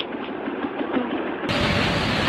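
A motorcycle riding along the road, heard as steady engine and road-wind noise. About one and a half seconds in it cuts abruptly to the louder, steady rush of fast-flowing floodwater.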